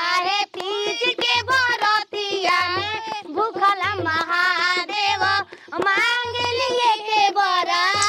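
A woman singing a high-pitched melodic song without pause, over a low drum beat that falls about every second and a quarter.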